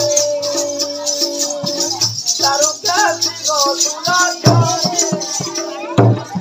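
Live Odia Danda nacha folk music: a held, bending melody line over barrel-drum strokes and steady, dense jingling percussion.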